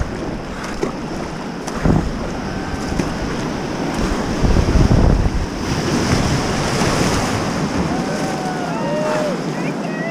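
Whitewater rapids rushing loud and close around a kayak, with heavier surges of splashing as the boat drops through the waves. Near the end, a few short rising-and-falling whoops.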